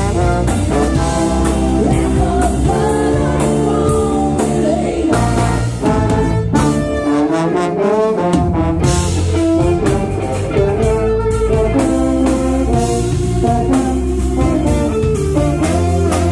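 Live brass band music: trombone, trumpet and saxophone over drums and bass. Around six seconds in, the low end drops away for a couple of seconds while a gliding trombone line plays on, then the full band comes back in.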